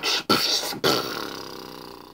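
Mouth beatboxing into cupped hands: two short hissing hits, then a long pitched tone that fades away.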